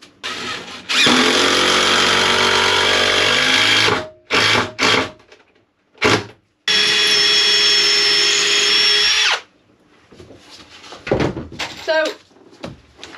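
Cordless drill-driver driving screws into the wooden hull frame: two runs of about three seconds each, with short bursts of the motor between them.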